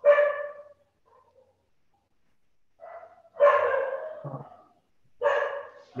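A dog barking, heard over a video-call line: three separate barks or bark runs, near the start, in the middle, and shortly before the end.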